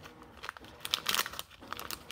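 Foil wrapper of a Pokémon TCG booster pack crinkling as it is torn open by hand, a run of sharp crackles that is loudest about a second in.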